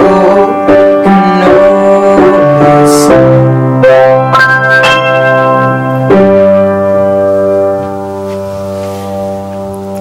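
Upright piano playing the closing chords of a ballad: several chords in the first six seconds, then a final low chord struck about six seconds in and left to ring out, fading.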